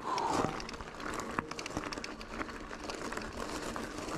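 Mountain bike tyres rolling over a loose gravel road, with a steady crunch and many small crackles and clicks of gravel and bike rattle, and a brief louder rush at the start.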